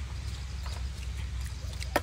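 Soft eating sounds: a few faint, spaced clicks of chewing and a spoon over a steady low rumble.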